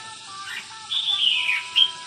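Caged red-whiskered bulbul calling: a short chirp, then a clear whistled note that slides downward about a second in, and a brief final note.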